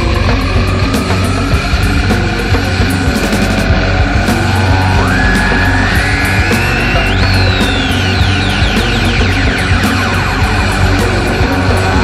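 Loud, aggressive punk rock band music playing an instrumental passage, with high pitched notes gliding up and down over a dense, steady low end.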